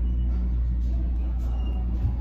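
A steady low rumble, even throughout, with faint sustained tones above it.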